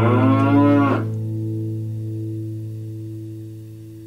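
A cow mooing once, a single call about a second long that bends up in pitch and cuts off, over a strummed acoustic guitar chord that rings on and slowly fades out.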